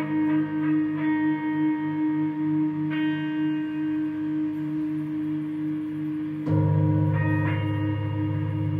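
Electric guitar feedback through an amplifier: a sustained steady tone over a pulsing low drone, with higher ringing overtones swelling in and out. About six and a half seconds in, the low drone jumps suddenly louder.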